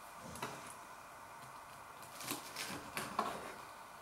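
Knife and fork cutting into a crisp-coated cheeseburger on a wooden chopping board: a few light scrapes and clicks of cutlery, most of them in the second half.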